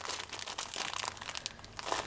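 A clear plastic zip-lock bag of Murano beads crinkling as it is handled and turned in the hands, with irregular soft crackles.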